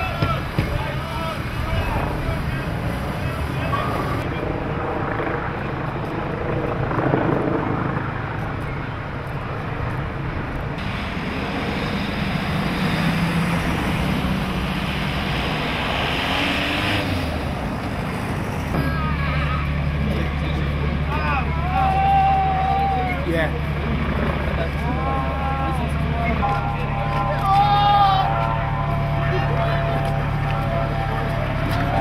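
Engines running, with distant voices calling. A steady low engine drone sets in about two-thirds of the way through.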